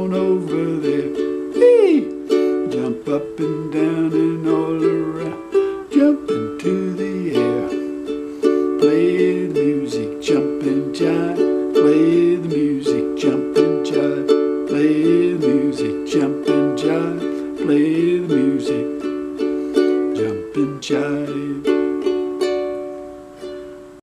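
Deviser concert ukulele with a capo on the second fret, giving D tuning, strummed in a steady rhythm of chords. The playing dies away near the end.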